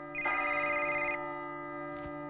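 Telephone ringing: one ring about a second long, beginning just after the start.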